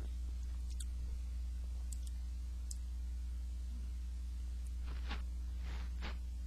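Steady low electrical hum from the recording setup, with a few faint mouth clicks as the beer is tasted. Near the end come two short breath-like rushes of air.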